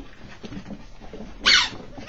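A Chihuahua puppy gives one short, high yip that falls in pitch, about a second and a half in, during excited chase play.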